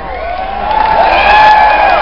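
Rock concert crowd cheering and whooping close around the microphone, several voices holding long shouts over a haze of crowd noise, swelling about a second in.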